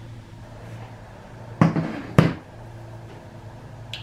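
Two sharp knocks about half a second apart, the second the louder, over a steady low hum.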